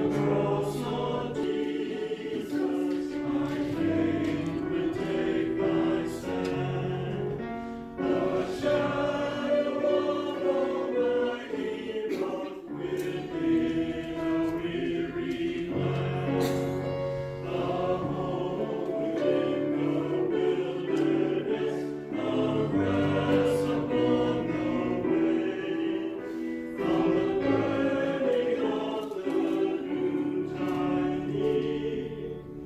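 A small mixed choir of men and women singing together in parts, accompanied by a grand piano, in continuous sustained phrases.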